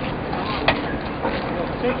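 Men's voices, talking faintly, over a steady noisy background, with one sharp click about a third of the way in.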